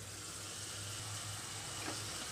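Diced carrots and green chillies frying in oil in an uncovered aluminium kadai, a soft, steady sizzle.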